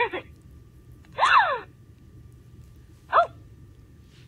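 Hasbro Trolls doll's recorded voice sound set off by its button: a few short, breathy gasps, the loudest about a second in and a brief one near the end.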